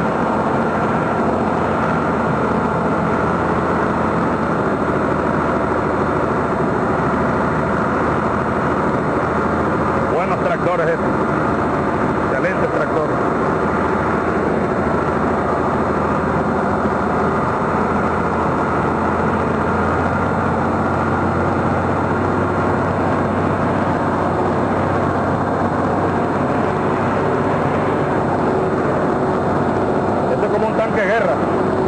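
Engine of a moving vehicle running steadily as it drives along, a continuous even drone with no change in pace, and faint voices now and then.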